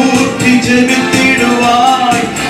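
A man singing a Christian revival song into a handheld microphone, holding long notes, over music with a steady percussion beat.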